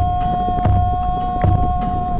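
Large wooden barrel drum played by hand in a steady beat, under a single high note held steadily.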